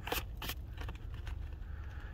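A coin scraping the coating off a paper scratch-off lottery ticket: a few quick strokes near the start, then fainter scratching and handling of the card.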